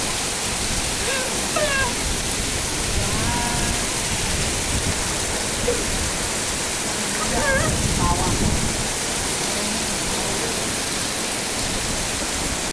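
Heavy rain pouring down in a steady hiss, with runoff streaming off roof edges.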